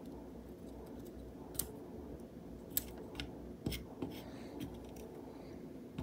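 Quiet small-room tone with a faint steady hum and a handful of faint, sparse clicks from small handling of solder wire and a soldering iron on a connector.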